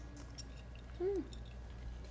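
A woman chewing a mouthful of herb salad, with faint soft clicks of chewing, and a short closed-mouth "mmm" of approval about a second in.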